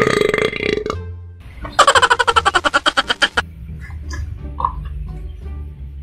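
A man burping: a loud vocal burst at the start, then a long pulsing burp about two seconds in that falls in pitch, as he is getting full from eating.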